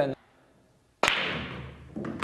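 Pool break shot: the cue ball cracks into the racked balls about a second in, then the balls clatter and fade out.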